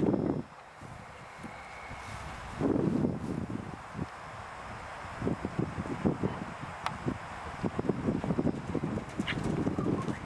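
Wind on the microphone, then a cantering horse's hoofbeats on grass: a run of soft, low thuds through the second half, two or three a second.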